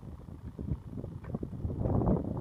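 Wind buffeting the microphone: a low, uneven rumble that rises and falls with the gusts.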